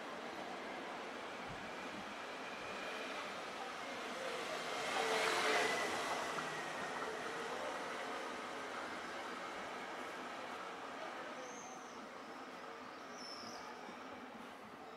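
City street ambience with a passing motor vehicle, its noise swelling to a peak about five seconds in and then slowly fading.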